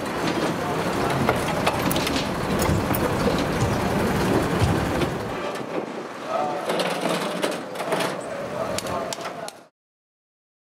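Busy pit-area ambience of indistinct background voices. For about the first half a vehicle engine runs under occasional sharp metal clanks and knocks. The sound cuts off suddenly just before the end.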